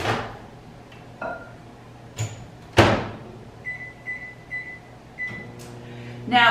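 Microwave oven being started: the door clicks open, shuts with a loud knock a little under three seconds in, then the keypad beeps four times and the oven starts running with a low hum near the end.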